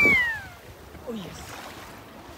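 A person's voice ending a high, drawn-out call that falls in pitch and fades within the first half second, then a low steady background hiss.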